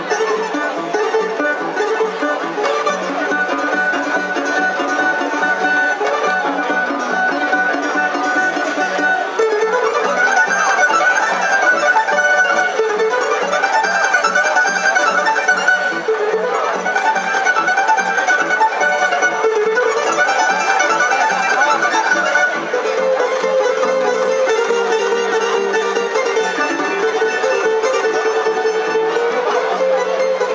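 Tamburica orchestra playing an instrumental tune live: small prim and brač tamburicas picking the melody over strummed chords and a plucked begeš (tamburica bass).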